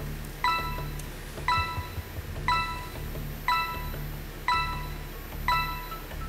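Quiz-show countdown timer sounding a short, bell-like ping once a second, six pings in all, over a low, steady music bed.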